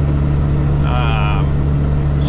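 Heavy truck under way, its engine and road noise a steady low drone heard from inside the cab. A brief vocal sound from the driver comes about a second in.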